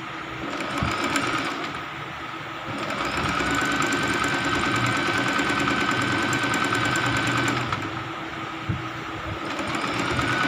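Domestic electric sewing machine stitching fabric in runs: a short burst about a second in, then a longer steady run with a motor whine from about three seconds in that stops near eight seconds, starting again near the end.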